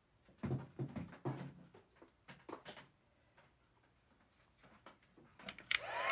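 A few soft knocks and taps of things being picked up and set down on a craft table, then a pause. About five and a half seconds in, an embossing heat tool switches on and starts blowing with a steady airy hiss.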